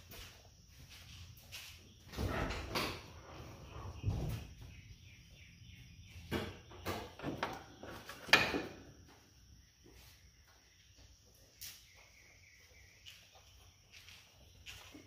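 Faint, scattered knocks and short handling noises: several clunks in the first half, the loudest a little past eight seconds, then it goes quieter toward the end.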